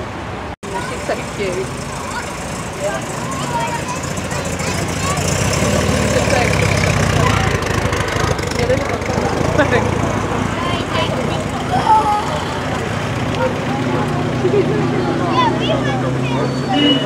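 Classic cars driving slowly past one after another, their engines running at low revs, with the hum growing louder through the middle as one passes close. Crowd chatter runs over it, and the sound cuts out for an instant about half a second in.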